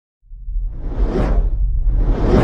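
Cinematic whoosh sound effect over a deep bass rumble: after a brief silence the rumble comes in and a whoosh swells, peaks a little past a second in and fades, with the next whoosh starting near the end.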